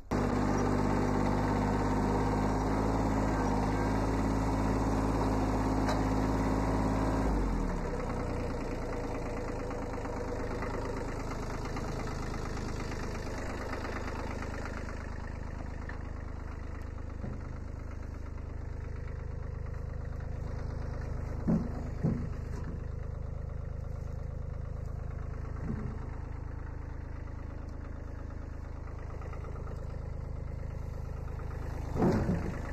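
1981 Kubota B7100 tractor's small three-cylinder diesel engine running steadily, louder at first and then dropping to a quieter, lower idle about seven seconds in. A couple of short knocks come about two-thirds of the way through.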